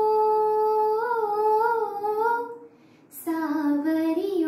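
A woman singing alone with no accompaniment. She holds one long steady note, then sings a wavering, ornamented run. After a short breath pause about three seconds in, she begins a new phrase lower down.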